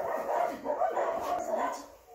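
A dog whining, a high wavering cry that runs almost unbroken and fades out near the end.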